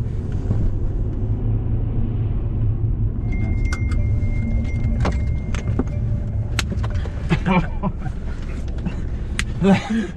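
Steady low rumble of a car's engine and tyres heard from inside the cabin as it rolls slowly, with scattered sharp clicks and a thin steady beep for a few seconds in the middle.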